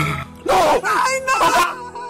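A woman's anguished wailing in grief: two loud, high-pitched cries about half a second and a second and a half in, over a sustained organ music score.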